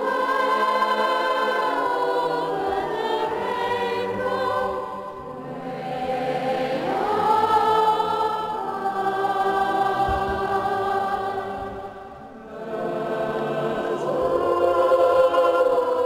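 Boys' choir singing sustained chords in a cathedral, dipping briefly between phrases about five and twelve seconds in.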